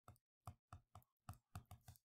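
Faint stylus taps and clicks on a tablet screen while writing by hand: about eight short ticks over two seconds.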